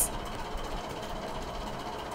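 A steady low background hum with hiss, unbroken and even throughout.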